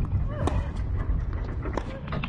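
Outdoor court ambience: wind rumbling on the microphone, with a few sharp, irregularly spaced ticks and a brief faint voice about half a second in.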